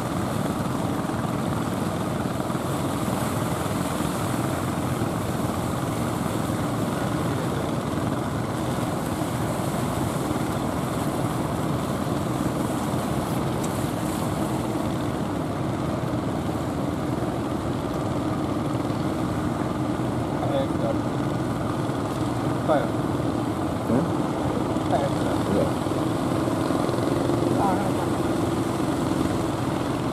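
Large wooden fishing boat's inboard engine running in a steady drone as the boat motors past close by. A few brief voices or calls are heard in the second half.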